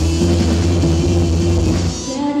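Live rock band playing loudly: drum kit, electric bass and electric guitar through amplifiers, with a sustained note held over the beat.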